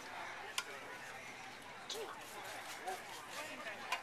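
Faint background chatter of people talking, with a few short, sharp clicks.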